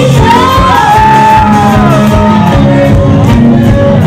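Live band music with a steady drumbeat, and a voice holding a long high note over it that slides slowly down.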